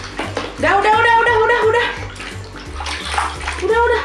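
Water splashing and sloshing in a plastic tub as a toddler plays in it, with background music and voices over it.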